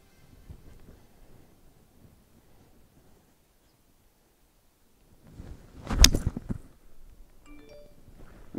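A golf four iron, gripped down, swung at a teed ball: a brief swish of the club through the air and then one sharp click of the clubface striking the ball, about six seconds in.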